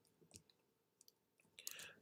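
Near silence, with a few faint clicks.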